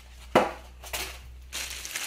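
Plastic bag wrapping crinkling as the bagged stereo microscope head is handled, with one sharp knock about a third of a second in.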